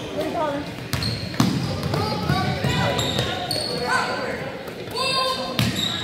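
Basketball bouncing on a hardwood gym floor, a few sharp thuds, under voices of players and spectators echoing in a large gym.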